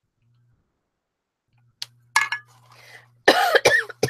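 A woman coughing a few times, starting about halfway in, with the two hardest coughs close together near the end; she puts the cough down to her asthma being bad today.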